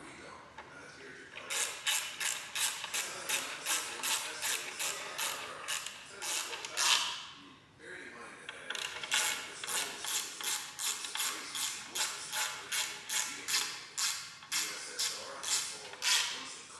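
Hand ratchet wrench worked back and forth, a bolt being done up, in two long runs of clicking strokes at about three a second, with a short pause a little past the middle.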